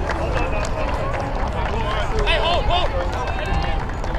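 Several people shouting and calling over one another around a rugby ruck, with a steady low rumble underneath.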